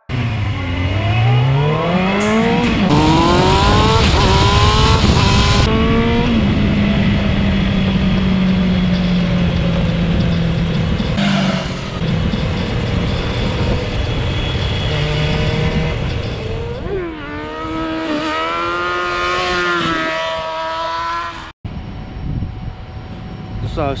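Motorcycle engine revving up hard through the gears with heavy wind rush over the microphone, then the throttle is closed and the engine note sinks slowly as the bike coasts at speed with the rider in a headstand. The engine note dips and climbs again near the end before the sound cuts off.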